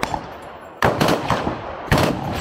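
A short burst of automatic gunfire: several shots in quick succession about a second in, then another shot near the end.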